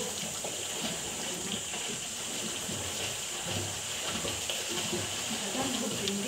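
Steady splashing of water from swimmers flutter-kicking across a pool on kickboards.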